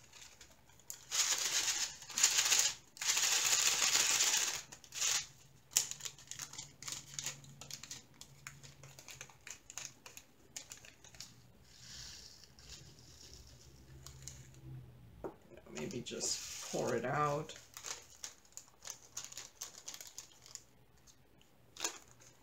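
Small plastic bag of diamond painting drills crinkling loudly in two bursts as it is handled and opened, followed by a long run of small light clicks and rustles as the drills are tipped out and moved about. A short hum of voice comes near the end.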